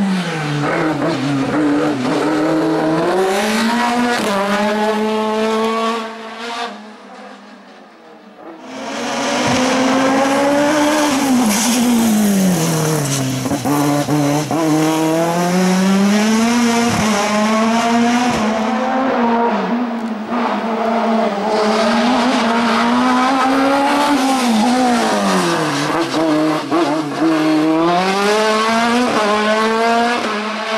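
Racing sports-prototype engine revving up and falling back again and again through a cone slalom, with tyre squeal. The sound fades briefly about seven seconds in, then the engine comes back loud.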